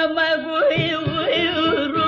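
Carnatic classical music from a live concert recording: a male vocal line bending and oscillating in pitch with gamaka ornaments over a steady drone, with soft drum strokes underneath.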